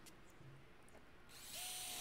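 Handheld power drill with a one-eighth-inch bit spinning up about a second and a half in with a steady whine, starting a pilot hole in the car's sheet-metal trunk lid. It is near silent before that.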